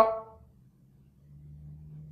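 The tail of a man's spoken word fading out, then near silence, with a faint, steady low hum coming in about a second in.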